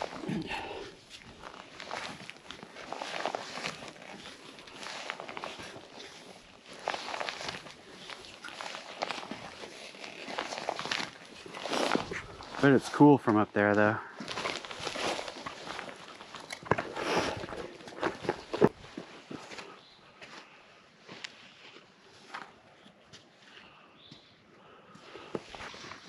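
Footsteps coming down the wooden treads of a steel lookout tower's staircase: a steady series of thuds about once a second that stops about two-thirds of the way through.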